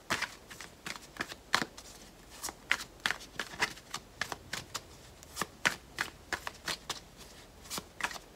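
A tarot deck being shuffled by hand, packets of cards dropped and slapped together in quick, irregular snaps, a few a second.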